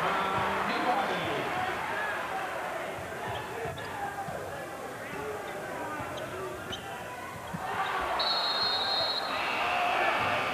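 Basketball game sound in a packed arena: the ball bouncing on the hardwood court over a steady crowd din, with short shoe squeaks. Near the end a steady shrill tone sounds for about a second, a referee's whistle stopping play as the ball goes out of bounds.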